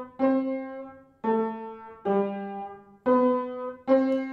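Upright piano playing octaves: four struck in turn about a second apart, each left to ring and fade, the second and third a little lower than the first and last. They show how two notes an octave apart blend into one ringing sound.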